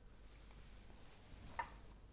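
Quiet room with a single light tap about one and a half seconds in, as a small glass tumbler is set down on the table.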